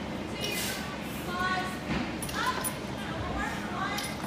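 Faint background voices of people talking in a gym, over steady room noise.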